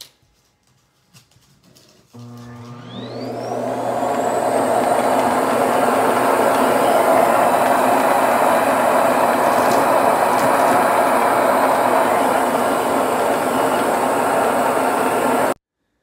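Samsung Jet Bot+ Clean Station suction motor starting about two seconds in with a rising whine as it spins up, then running loudly and steadily as it sucks the debris out of the robot's dust bin. It cuts off suddenly near the end.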